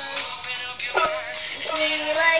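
A young boy singing a sustained melody line, with a sharp tap about a second in.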